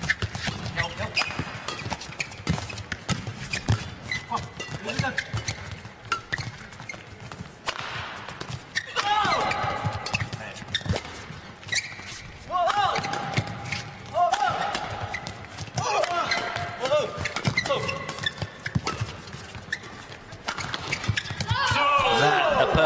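Badminton doubles rally: rackets strike the shuttlecock again and again in quick, sharp hits, and shoes squeak on the court. From about halfway through come short vocal grunts and calls from the players.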